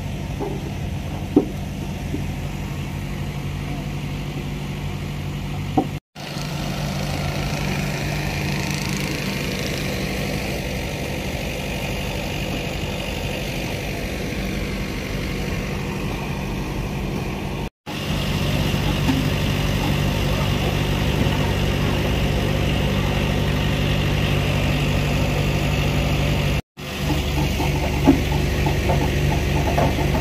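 A heavy diesel engine idling steadily, with a few sharp knocks over it and the sound breaking off briefly three times.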